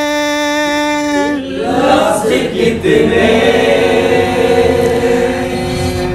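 A man singing into a microphone, holding one long steady note for just over a second, then a busier stretch where several voices overlap, as if others sing along.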